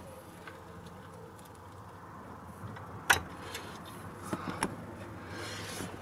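Socket and breaker bar working on a truck's upper control arm bolt: one sharp metallic click about halfway through, then a few lighter ticks, over a low steady background hum.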